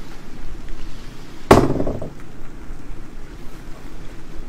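A die is rolled onto a table: one sharp clack about a second and a half in, followed by a brief rattle as it settles. A steady low background ambience runs underneath.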